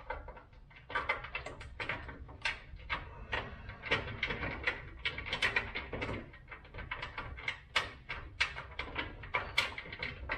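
Hands fitting a car's rear fender in the wheel arch: a dense run of irregular small clicks, scrapes and rubbing from bolts and fittings being worked into place, with no steady rhythm.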